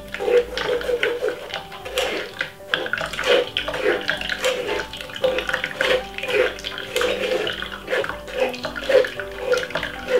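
Cranberry juice trickling in a thin stream into a plastic jug as blended pulp is pressed and worked through a metal sieve, with irregular short scraping strokes against the mesh.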